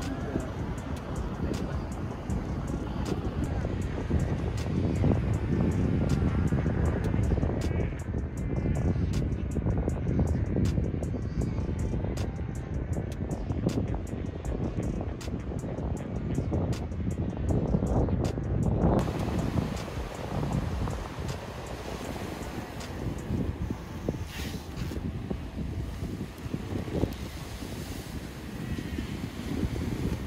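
Wind buffeting a camera microphone on an open beach: a steady low rumble, with a quick run of faint clicks in the middle stretch. The sound changes abruptly about two-thirds of the way through.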